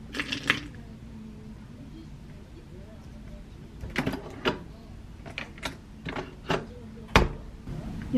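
Coffee capsules clinking in a ribbed glass dish, then the Nespresso Lattissima One's lid lever being raised and a capsule loaded: a run of sharp clicks and clunks, the loudest just after seven seconds in.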